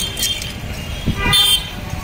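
A vehicle horn gives one short toot about a second and a half in, over the steady low rumble of street traffic.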